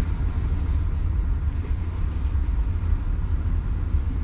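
Steady low rumble of a car's engine and tyres on the road, heard from inside the moving taxi's cabin.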